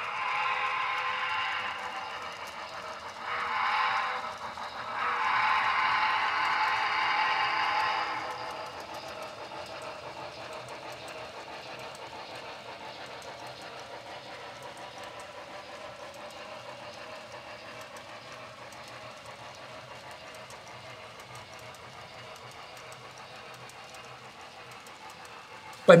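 Sound-equipped HO scale model steam locomotive blowing its whistle in three blasts, long, short and long, over the first eight seconds. The model freight train then runs on with a steady, quieter running sound.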